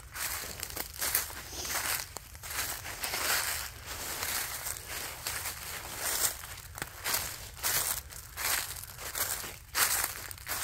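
Footsteps crunching through dry fallen leaves at a walking pace, one crunch with each step.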